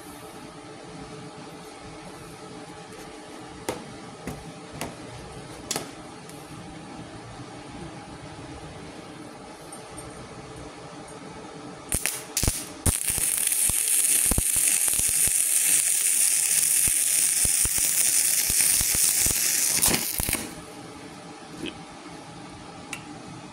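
Stick (MMA) arc welding with a 4 mm electrode on a MultiPro MMAG 600 G-TY inverter welder. Over a faint steady hum and a few light clicks, the arc strikes about twelve seconds in with a couple of sputters, then burns with a loud, even crackle for about seven seconds before breaking off suddenly.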